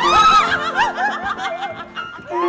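Opera singer laughing in character: a high note swoops into a quick run of short, pitched 'ha-ha' bursts, several a second, over steady sustained notes of the accompaniment.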